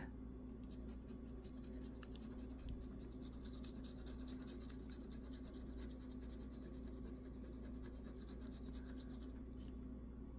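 A coin scratching the coating off a scratch-off lottery ticket: faint, rapid scraping strokes, over a low steady hum.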